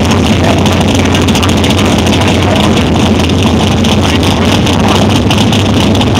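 Drag car's engine running loudly and steadily as the car creeps forward out of its burnout smoke toward the starting line.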